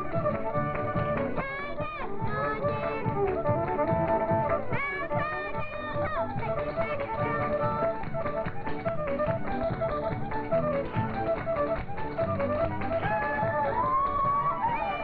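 Country string band playing a square-dance tune with a steady beat, with the dancers' feet tapping on the stage floor.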